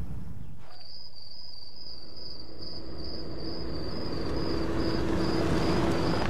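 A steady, high, insect-like trill, slightly pulsing, starts about a second in and carries on. A low steady hum and rumble build gradually beneath it over the second half, fitting a car approaching on a dirt road.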